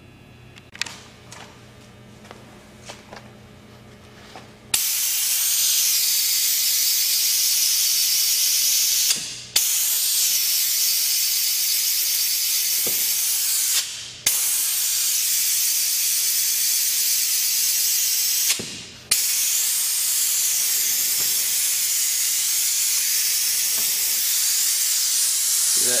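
Piab VGS3010 compressed-air vacuum ejector with a two-stage Di16-2 COAX cartridge running, a loud, steady hiss of exhaust air as it draws vacuum through the suction cup. The hiss starts about five seconds in, and three times it falls away briefly and then comes straight back.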